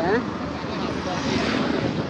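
Steady noise of a motor vehicle running close by in street traffic, with no clear tone or rhythm.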